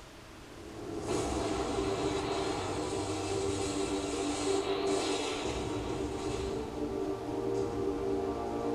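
Soundtrack of a projected news video played over hall loudspeakers. After a short lull, a steady wash of noise with sustained low tones comes in about a second in and holds.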